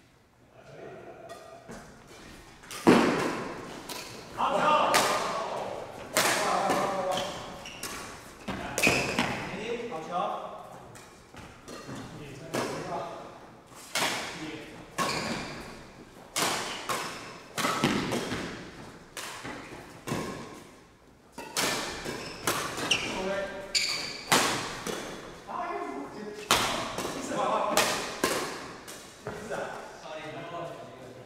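Badminton rally: repeated sharp racket hits on the shuttlecock, about one a second, echoing in a large hall, with players' voices between the strokes.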